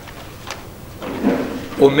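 A brief pause in a man's spoken Hebrew lecture: a single small click about half a second in, a faint low vocal murmur, then his speech resumes near the end.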